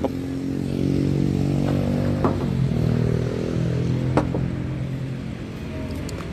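A motor vehicle's engine running at a steady speed, growing fainter near the end, with a few sharp clicks over it.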